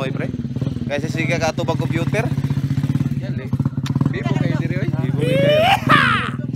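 Trail dirt bike engine idling steadily nearby, with people talking over it; a loud rising glide near the end.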